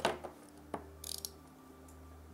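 Handling noise as a 2.5-inch SSD is lifted out of its black plastic packaging tray: a couple of light clicks and a brief scrape about a second in.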